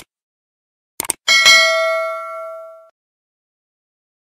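Subscribe-button animation sound effect: a mouse click, a quick double click about a second in, then a bright notification-bell ding that rings out and fades over about a second and a half.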